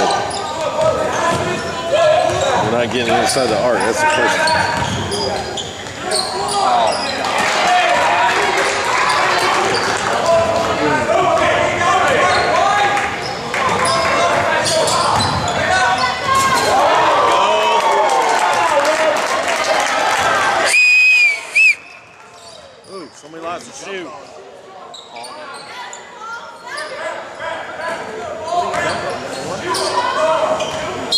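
Basketball game in a gym: a ball dribbling on the hardwood floor amid players' and spectators' shouts, echoing in the large hall. A referee's whistle blows briefly about 21 seconds in, after which the sound drops much quieter.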